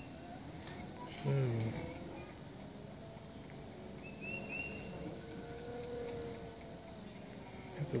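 12-volt stepper motors of a homemade azimuth-elevation antenna rotator, driven by SparkFun stepper controllers, running under a light load: a faint, thin, steady whine whose pitch swells and bends slightly in the second half as the motors change speed.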